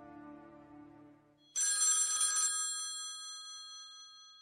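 A held music chord fades out, then about a second and a half in an old rotary-dial telephone's bell rings once, a short burst of about a second whose ring dies away slowly.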